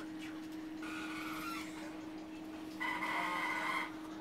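Onboard a moving electric passenger train: two short high-pitched tones over a steady low hum. The first comes about a second in; the second, lower-pitched and louder, comes near the end.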